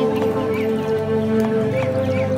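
Background music: a held note that steps up to a higher pitch near the end, with faint gliding vocal-like sounds over it.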